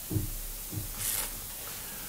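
Quiet handling of playing cards: a few soft taps and a brief swish about a second in.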